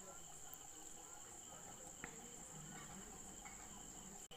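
Near silence: faint room tone with a steady high-pitched whine.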